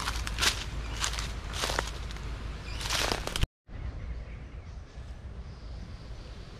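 Footsteps crunching through dry leaf litter, several steps about half a second to a second apart. About three and a half seconds in the sound cuts out abruptly, and only a faint outdoor background follows.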